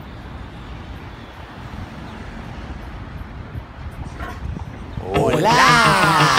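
Low street rumble with wind on the microphone. About five seconds in, a man lets out a loud shout that glides in pitch.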